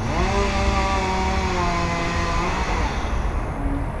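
An engine revs up, holds a steady pitch for about two seconds, then drops away near the end.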